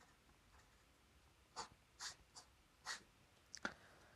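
Faint scratches of a pen writing on paper, about five short strokes spread over the second half, as an answer is written and a box ruled around it.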